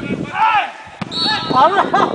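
Men shouting across a football pitch, with a referee's whistle blast about halfway through, held for about a second.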